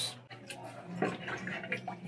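Plastic lid being taken off a blue plastic water barrel: light clicks and rubbing of plastic on plastic.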